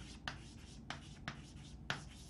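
Chalk scratching on a blackboard as a word is handwritten, faint, in about five short strokes, each starting with a light tap of the chalk on the board.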